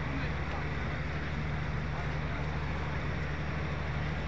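Outdoor concert crowd murmuring between songs over a steady low hum.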